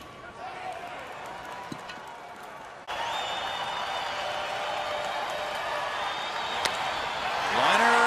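Ballpark crowd noise from a baseball broadcast, a low murmur that jumps louder at an edit about three seconds in. Near the end a single sharp crack of the bat meets the ball, and then a commentator's voice starts.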